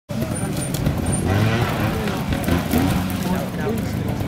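Trials motorcycle engine running at low revs as the bike is ridden slowly through a section, with people talking over it.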